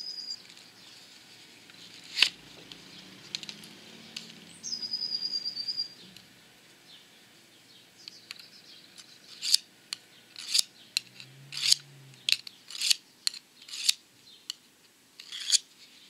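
Bahco Sharpix tungsten-carbide sharpener drawn repeatedly along a steel kitchen knife blade: about a dozen short scraping strokes, roughly two a second, starting a little past halfway, as the long-dulled edge is re-ground.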